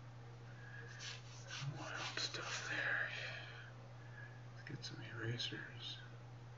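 Quiet whispered speech in two short stretches, a longer one in the first half and a brief one near the end, over a steady low hum.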